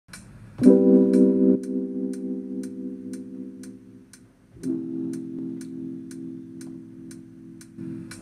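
Electronic jam on an Arturia Spark LE drum machine setup: a steady hi-hat-like tick about twice a second under long sustained keyboard chords. The first chord comes in loud about half a second in and fades, and a second chord starts about four and a half seconds in and is held.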